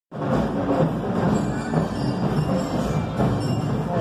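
Marching band playing music.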